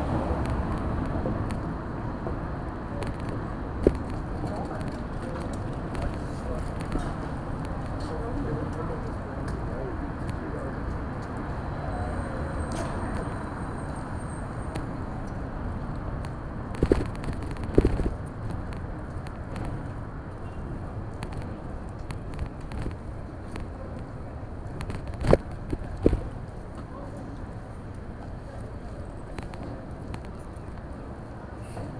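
City street ambience: a steady hum of traffic with indistinct voices, broken by a few sharp knocks, one a few seconds in, two close together in the middle and two more near the end.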